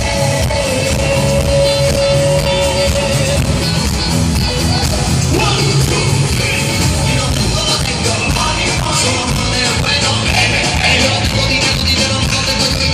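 Live band and singers performing on stage, a dense mix of drums, instruments and amplified voices with a steady beat. A long note is held for the first three or so seconds before the music moves on.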